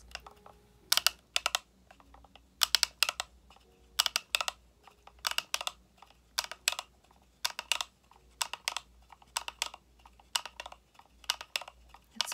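Hand-cranked manual coffee grinder being turned: a quick cluster of sharp clicks about once a second as the crank goes round.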